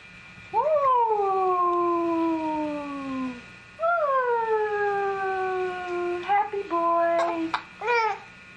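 Young baby vocalizing: two long drawn-out cooing calls, each starting high and sliding down in pitch over nearly three seconds, then a few shorter, quicker calls near the end.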